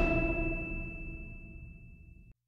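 The last chord of background Christmas music, led by a bright bell-like ringing tone, dying away steadily.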